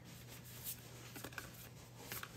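Faint handling of a deck of oracle cards being shuffled by hand: soft rustle with a few light clicks, over a low steady hum.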